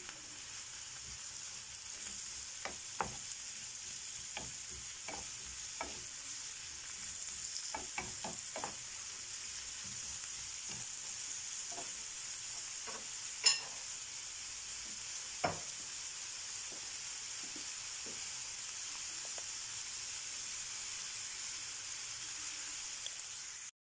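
Diced onions and bell peppers sizzling steadily in a frying pan while a wooden spoon stirs them, with scattered clicks of the spoon against the pan; the sharpest knock comes a little past halfway.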